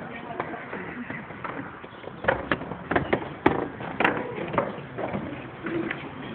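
A quick, irregular run of sharp clicks and knocks, thickest in the middle few seconds.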